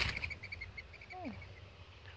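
A bird calling close by: a quick series of about ten short, high notes that slow and fade over the first second and a half, with a brief falling vocal sound a little after a second in.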